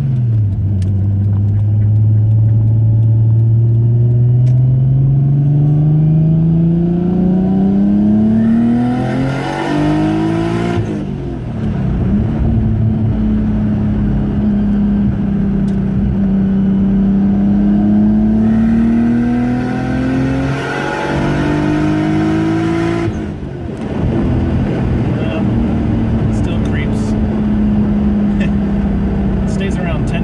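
Nissan Skyline GT-R's turbocharged RB26 straight-six, heard from inside the cabin, accelerating through two gears. The engine note climbs steadily, drops at a shift about eleven seconds in, and climbs again, with a rushing hiss building near the top of each gear. It drops again at about 23 seconds to an even cruise. This is a boost test run in which boost creeps past target at high rpm, which the driver puts down to the manifold design.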